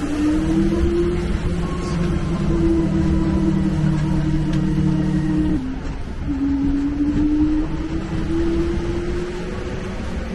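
Tour tram's engine running under load with a low rumble, its pitch climbing slowly as it gathers speed. About halfway through, the pitch drops sharply, as at a gear change, then climbs again.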